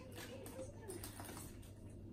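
Faint handling of a makeup brush set's box as it is worked open: small scattered clicks and rustles, under a faint murmured voice.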